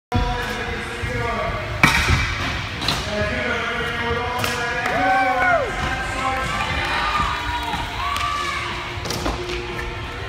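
Sharp thuds and clacks of scooter and bike wheels and decks hitting the skatepark ramps, four or so scattered knocks with the loudest about two seconds in, over background music and voices.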